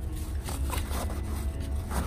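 Mesh bug screen rustling and scraping against the van's door frame as it is tucked in by hand, over a steady low rumble of handling noise.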